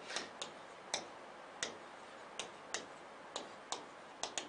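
Stylus tip tapping and clicking against the glass of an interactive display as handwriting is written: about eight faint, sharp, irregularly spaced clicks.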